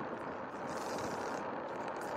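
Faint, steady cabin noise inside a car stopped with its engine running: an even hiss with no clear tone or knocks.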